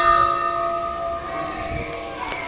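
Temple bell ringing on after being struck, several steady tones slowly dying away.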